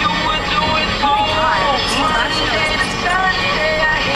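A song with singing playing on a car radio inside a moving car, over the low hum of the car on the road.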